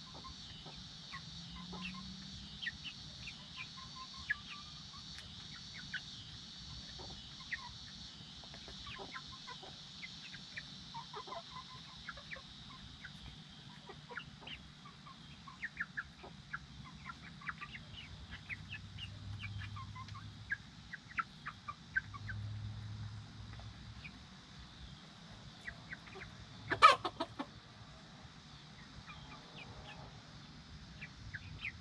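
A group of young Silkie chickens giving many short, high chirps and clucks as they feed, with one loud, sharp sound near the end.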